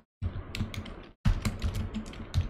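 Keystrokes on a computer keyboard: typing in two quick runs of clicks, with a short break in between.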